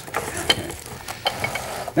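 A few small clicks and light scrapes of metal tongs and jars being handled on a wooden tabletop, over a low hiss.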